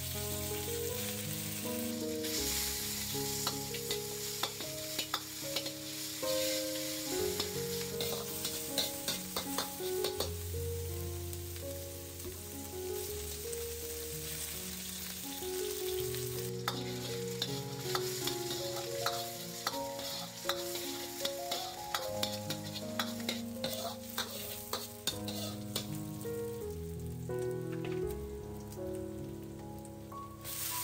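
Pork belly slices stir-frying in a hot wok: a steady sizzle with a metal ladle repeatedly scraping and clicking against the wok, over background music.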